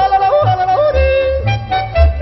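Yodeling voice leaping sharply between low and high notes over a Swiss folk accompaniment with a steady bass on the beat, about two bass notes a second.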